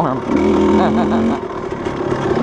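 Kawasaki KDX220 two-stroke single-cylinder dirt bike engine running as the bike is ridden along a trail. Its note holds level for about a second, starting a third of a second in.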